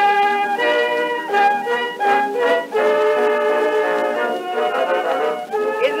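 Small orchestra playing an instrumental passage between the sung refrain and the spoken patter of a 1917 Edison acoustic recording, with a moving melody line. The sound is thin, with no bass. A man's voice starts speaking at the very end.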